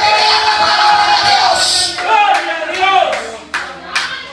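Rhythmic hand clapping, about three claps a second, with music, under a man's voice amplified through a microphone. The voice holds one long drawn-out note at first, then breaks into quick phrases.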